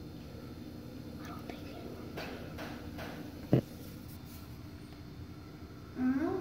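Hushed whispering over a steady low hum, with one sharp knock about three and a half seconds in.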